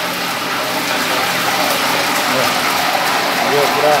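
Meat frying in a wok over a gas burner: a steady, loud sizzle like rain. A voice speaks briefly near the end.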